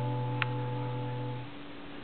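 The last piano chord of the accompaniment ringing and fading away, with a short click about half a second in; the low bass note stops near the end.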